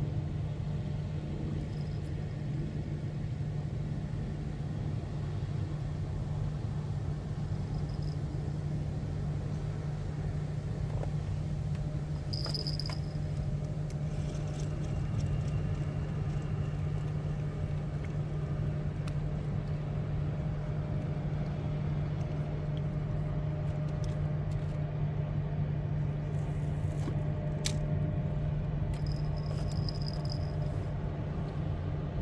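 Steady low engine drone that holds unchanged throughout. A few brief high peeps sound over it, the clearest about twelve seconds in.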